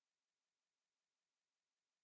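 Silence: no sound at all, only an extremely faint, even noise floor.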